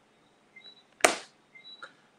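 A single sharp noise burst about a second in that dies away quickly, over faint short high chirps that come and go in the background.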